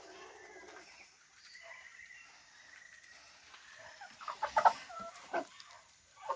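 A flock of chickens clucking while feeding on scattered corn: faint, quiet clucks at first, then several short, louder calls from about four seconds in.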